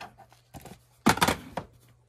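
Plastic DVD case being handled: a few sharp clicks and knocks, the loudest cluster just after a second in.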